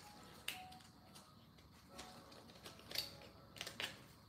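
A few short, sharp clicks and taps of small plastic and cardboard being handled: a fountain pen, an ink cartridge and its cartridge box. There is one click about half a second in, another about three seconds in, and a quick pair near the end.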